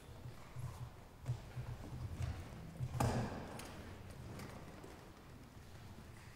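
Soft, irregular low thuds and shuffling, with one sharper knock about three seconds in; no accordion music is playing.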